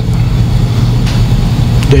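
A loud, steady low hum with no speech over it.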